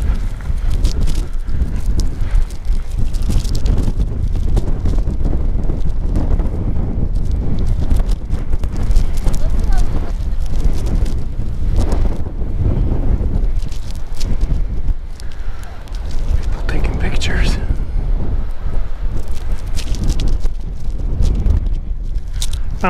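Strong wind buffeting a chest-clipped lapel microphone, a heavy steady rumble, with the wearer's hard breathing picked up close to the mic.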